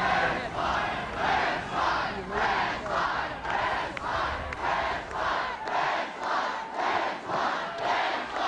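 Large crowd chanting in unison, a steady beat of loud shouts a little under two a second.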